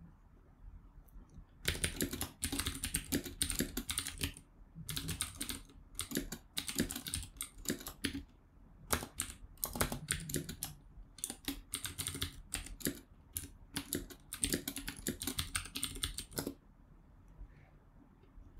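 Typing on a computer keyboard: quick runs of keystrokes with a few short pauses, starting about a second and a half in and stopping shortly before the end.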